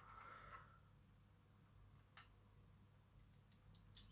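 Near silence with a few faint plastic clicks of LEGO bricks being handled and pressed together: one about two seconds in and a couple near the end.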